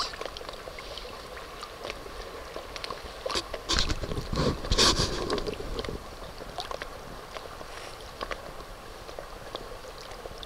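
Water lapping and gurgling against a small paddled boat, with scattered small knocks. About four to five seconds in there is a louder stretch of sloshing with a low rumble.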